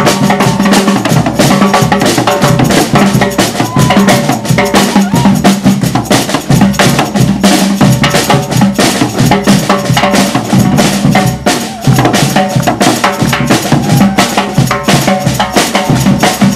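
Street batucada percussion: large metal-shelled drums struck with sticks and mallets in a fast, dense groove, with the metallic rattle of a hand-shaken jingle rack (chocalho) over it. The groove drops off briefly just before twelve seconds in.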